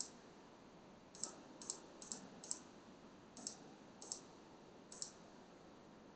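Computer mouse button clicking, about eight faint, separate clicks at uneven intervals.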